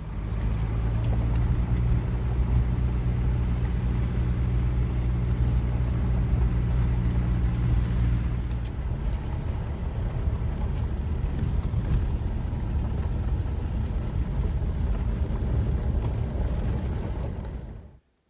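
A 2006 VW Beetle's diesel engine driving, heard from inside the car, with a steady low hum. About halfway through the hum gives way to a rougher, noisier rumble of tyres on a dirt road.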